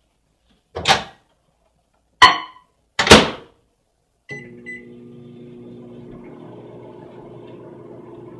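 Over-the-range microwave oven: three loud clunks as its door is opened and shut, then two short keypad beeps about four seconds in, and the oven starts running with a steady hum.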